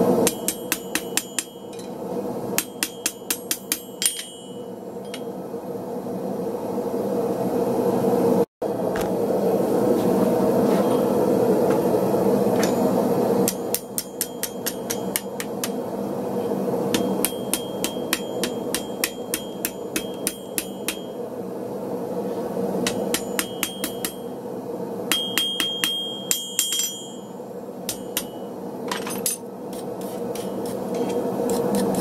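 Ball-peen hammer striking a hot steel bar on an anvil in runs of quick, ringing blows, several a second, with pauses between runs. A steady rushing noise runs underneath, and for a few seconds near the middle it is heard with no blows.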